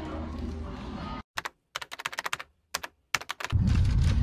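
Keyboard-typing sound effect: a quick, uneven run of sharp clicks over dead silence, after about a second of room noise cuts off. About half a second before the end, a low car-cabin rumble comes in.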